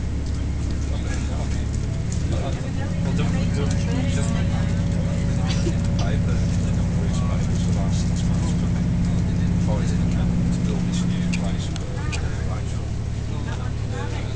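Passenger train running, heard from inside the carriage: a steady low drone with a stronger hum that sets in about three seconds in and drops away near twelve seconds, over scattered clicks and rattles from the running gear.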